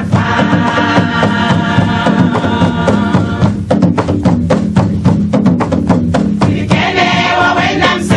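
Women's choir singing a gospel song with percussion accompaniment. About three and a half seconds in, the voices thin out and quick sharp percussion strikes take over for about three seconds, then the full choir comes back in near the end.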